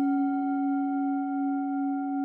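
A struck bell-like metallic tone ringing steadily, with a clear low pitch and several fainter higher tones ringing with it.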